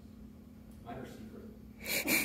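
Quiet meeting room with a faint voice about a second in, then a short, loud breath noise from a person close to the microphone near the end.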